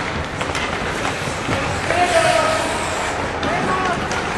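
Ice hockey play in an indoor rink: skates scraping the ice and a few sharp knocks over the steady noise of the hall, with voices calling out, loudest about halfway through.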